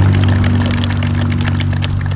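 An engine idling steadily: an even, loud low drone that does not change.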